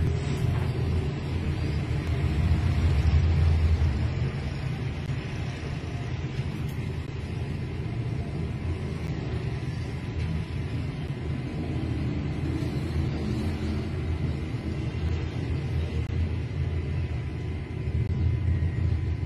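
Steady low rumble with a faint, thin, steady high tone above it. No sudden bang or impact.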